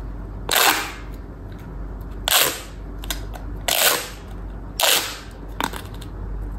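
Corrugated plastic pop tubes popping as hands work a pop-tube robot toy's legs. There are four loud, short popping zips a second or so apart, each sliding down in pitch, and a smaller one near the end.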